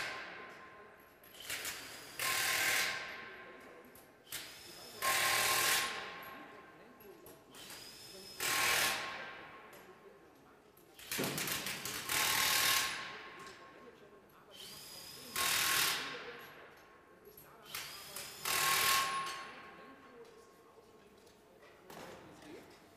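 Impact wrench running the wheel nuts onto a tractor's rear wheel hub: short loud runs of rattling hammering, one nut after another, about every three seconds.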